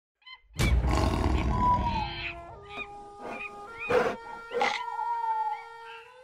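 Jungle logo sting: a loud, deep animal roar with a rumble starts about half a second in and lasts over a second. A short jingle of held notes stepping in pitch follows, with four short, sharp calls over it, and it fades near the end.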